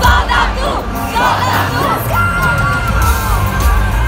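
Live pop band playing over a large concert PA while the crowd around the microphone screams and cheers. The crowd is loudest in the first two seconds.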